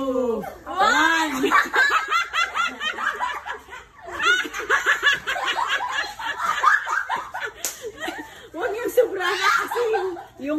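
Several girls laughing together in excited waves, with a short lull about four seconds in.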